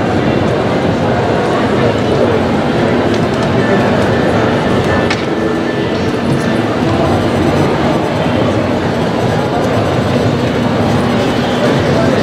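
Steady din of many overlapping voices on a busy trade-show floor, with music playing underneath.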